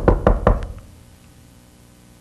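A quick run of about five knocks on the lecture table, over within the first second. They act out someone knocking at a door.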